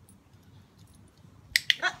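Handheld dog-training clicker giving a sharp double click near the end.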